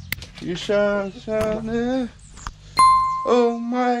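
A man humming a tune in short held notes. About three seconds in there is one electronic ding from the on-screen subscribe-button animation, and a click at the very start.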